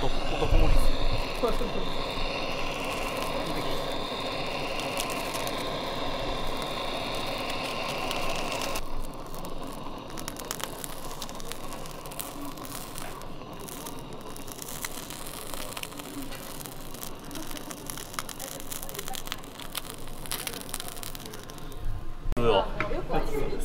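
Kitchen gas blowtorch flame-searing the skin of Spanish mackerel and cutlassfish slices, a steady hissing roar that stops abruptly about nine seconds in, leaving restaurant background noise with scattered clicks.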